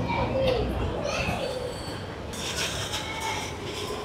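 Busy street background with faint chatter of passers-by, quieter than the nearby talk, and a brief patch of higher crackly noise about two and a half seconds in.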